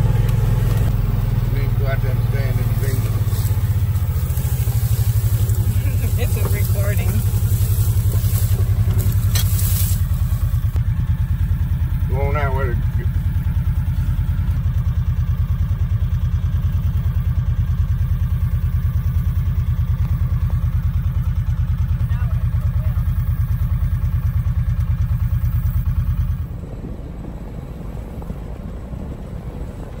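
Vehicle engine running steadily while riding, heard from aboard the vehicle, with a brief wavering pitched sound about twelve seconds in. The engine sound drops sharply in level near the end.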